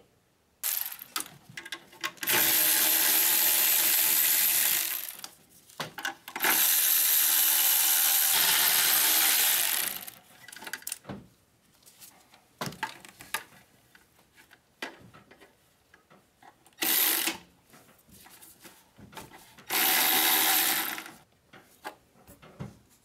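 A handheld power tool runs in bursts, backing out the bolts of the turbo heat shield: two long runs of about three seconds each, then two shorter ones near the end, with small clicks of the tool and bolts in between.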